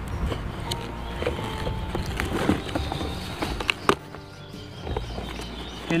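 Background music over the handling of a cardboard box being opened by hand, with a few sharp crackles about two and a half and four seconds in.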